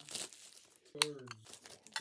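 Toy packaging being torn open and crinkled by hand, a run of irregular rustles. A short voice sound falling in pitch comes about a second in.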